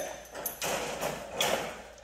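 Soft rustling and scuffing movement noises in a few short swells as a person carries a large dog bone over to a wire crate.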